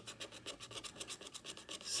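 A scratch-off lottery ticket being scratched with a handheld scratcher tool: quick, even back-and-forth scrapes, about a dozen a second, rubbing the coating off a number spot.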